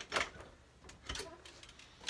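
Glass front door of a pachinko machine being unlatched and swung open, giving a few light clicks and knocks.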